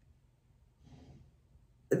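Near silence, with a faint, soft breath about a second in; a woman's speech starts right at the end.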